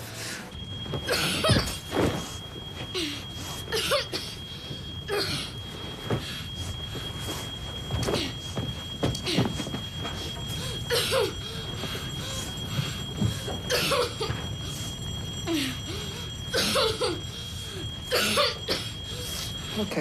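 A smoke alarm gives a continuous high-pitched tone in a smoke-filled flat during a fire. Over it, someone coughs repeatedly, a short cough every second or two.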